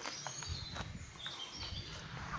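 Faint woodland ambience: distant birds chirping over a soft, even background hiss, with a few light ticks.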